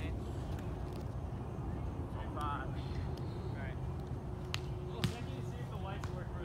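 Sand volleyball play: a single sharp slap of a volleyball being struck about five seconds in, the loudest sound, with a fainter click just before it. Brief distant calls from players sound over a steady low outdoor rumble.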